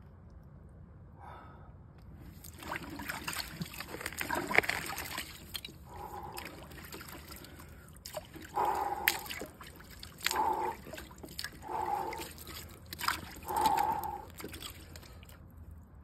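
Ice water sloshing and splashing in a clawfoot bathtub as a man moves his arms through it, starting a couple of seconds in, with several short, heavy breaths between the splashes.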